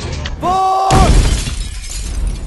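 A pane of glass shattering with a loud sudden crash about a second in, followed by high tinkling shards as it trails off. Just before the crash comes a brief held pitched tone, lasting about half a second.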